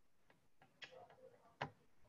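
Near silence with a few faint, short clicks, the last and loudest about one and a half seconds in.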